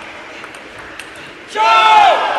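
Faint clicks of a table tennis ball during a rally, then, about one and a half seconds in, a sudden loud shout that falls in pitch as the point ends.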